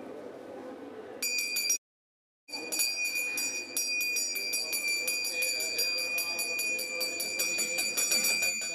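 Puja hand bell rung rapidly and evenly, about five strokes a second, with a clear ringing tone, starting a little over a second in. The sound cuts out completely for under a second near the two-second mark, then the ringing carries on steadily.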